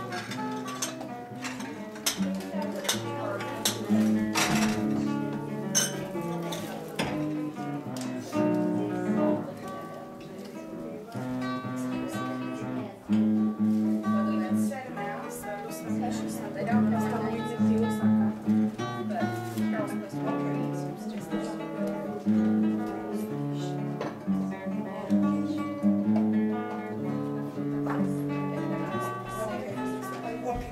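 Solo acoustic guitar playing a melodic piece, plucked notes and chords.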